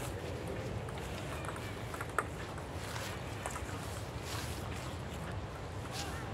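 Wind rumbling on the microphone, steady throughout, with one short sharp click about two seconds in.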